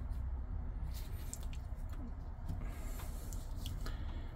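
Soft handling noise from gloved hands turning a folding knife over, with a few faint clicks, over a low steady hum.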